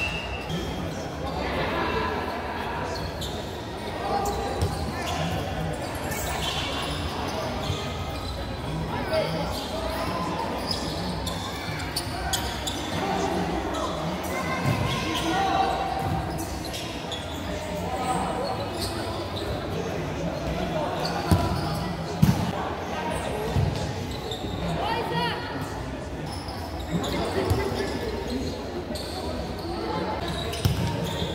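Futsal ball being kicked and bouncing on a hard indoor court amid players' shouts and spectators' chatter, all echoing in a large sports hall. Two sharper thuds stand out about three-quarters of the way through.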